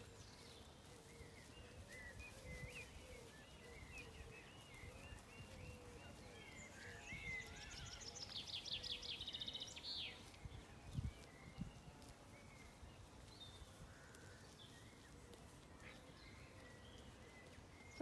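Faint birdsong: scattered chirps, and about seven seconds in a rapid trilled phrase of quick repeated notes lasting a few seconds. A couple of brief low knocks come shortly after.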